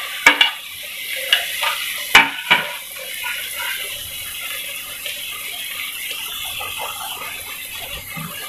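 A slotted metal spoon clinks against a kadhai several times in the first three seconds as chopped tomatoes go into the frying onion-chilli masala. Then there is a steady sizzle as the tomatoes fry in the hot oil.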